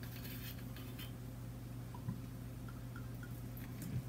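Quiet kitchen background: a steady low hum with a few faint light ticks.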